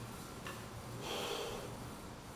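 A person sniffing softly through the nose to smell a lip conditioning oil, the faint sniff strongest about a second in.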